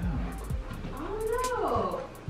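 A single drawn-out, meow-like cry, about a second long, that rises and then falls in pitch, over background music.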